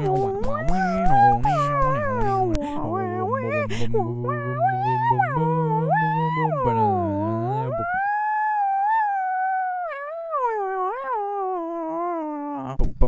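Multitracked a cappella voices singing without words: a low bass voice and several higher voices hold and shift chords, with sharp clicks in the first few seconds. About eight seconds in, the lower voices drop out, leaving one high voice gliding and wavering on its own.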